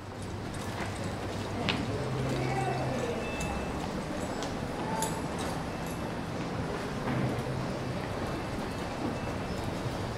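Horse walking on soft dirt arena footing: muffled hoofbeats over a steady low background hum.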